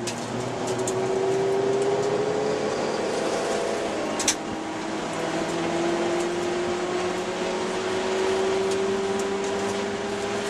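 Ford Escort ZX2's four-cylinder engine heard from inside the cabin, accelerating on track. Its note climbs, drops with an upshift about three seconds in, then climbs slowly again in the higher gear. A single sharp click sounds about four seconds in.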